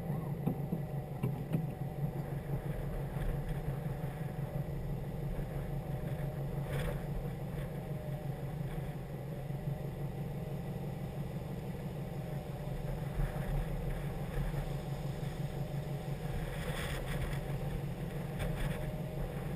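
2011 Subaru WRX's turbocharged flat-four engine idling steadily.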